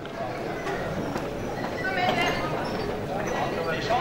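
Indistinct chatter of many spectators in a sports hall, several voices talking at once, with occasional light knocks.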